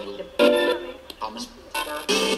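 Homemade spirit box scanning through its own sound files, putting out choppy, broken-off snippets of music and voice. There is a burst about half a second in, a lull, and a short blip near the end.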